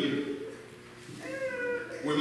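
A short, high-pitched held call, under a second long, about a second in, following the tail of a man's speech.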